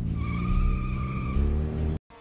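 A car engine revving up and holding, with a steady tyre squeal through most of the middle second, in a film's sound mix. It cuts off suddenly at the end.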